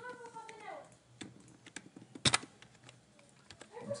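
Computer keyboard keys tapped one at a time: a handful of scattered, separate clicks, the loudest a little past halfway.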